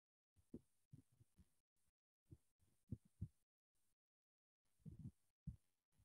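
Near silence, broken by a few faint low thuds and brief patches of microphone hiss that cut in and out.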